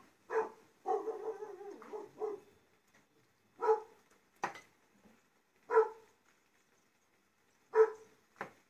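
A small dog barking in single short barks, about two seconds apart. A wavering whine comes about a second in, and a light click falls between the barks.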